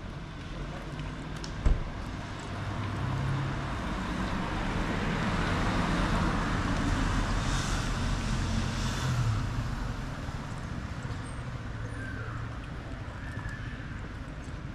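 A car driving past on the street, its engine and tyre noise swelling to a peak a little past halfway and then fading away. A single sharp click sounds about two seconds in.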